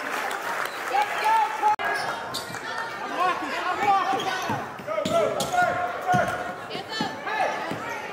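A basketball being dribbled on a hardwood gym floor, with players' and spectators' voices calling out around it.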